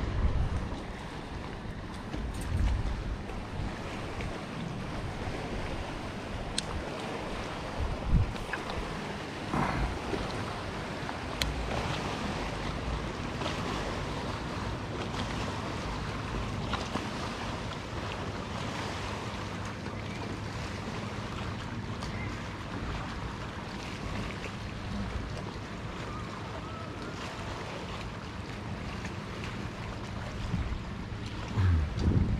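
Outdoor wind blowing on the microphone: a steady rush with low rumbling gusts and a few faint clicks.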